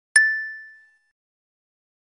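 A single bright, bell-like ding sound effect, struck once just after the start and ringing out, fading away within about a second.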